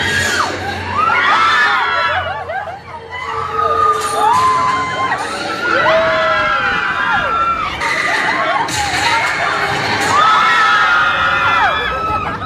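A group of riders screaming and cheering together during the drops of a free-fall elevator ride: many overlapping long cries that rise and fall, coming in several waves.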